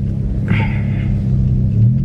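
Steady low engine and road rumble inside a moving car's cabin, with a brief hiss about half a second in.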